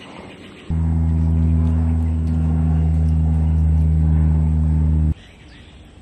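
A single long, steady, low horn-like blast, starting abruptly just under a second in and cutting off suddenly after about four seconds.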